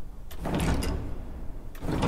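Stop knobs of a Kuhn pipe organ moved by the electric combination action (setter system) as a piston is pressed, some going in and some coming out. Two bursts of clattering knocks with a low rumble come about half a second in and again near the end, a bit loud and booming at the console.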